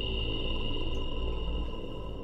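Eerie ambient drone from a TV documentary's soundtrack: a steady high tone held over a low rumble.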